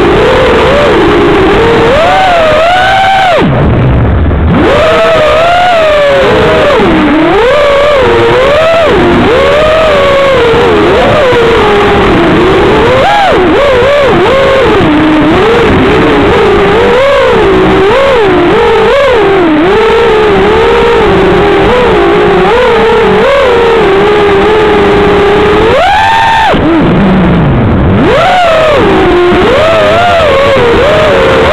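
FPV quadcopter's brushless motors whining loudly, the pitch rising and falling constantly with the throttle, with sharp climbs and drops about three seconds in and again near the end.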